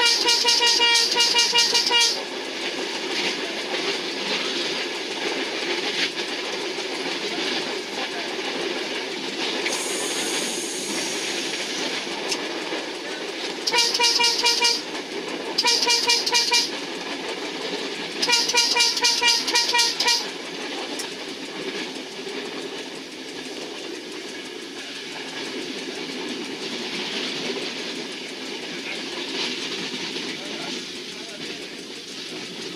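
Passenger train's horn sounding four blasts, heard from inside the cab: a long blast, then after a pause two short blasts and a long one, over the steady running noise of the train on the rails. A brief hiss comes about a third of the way in.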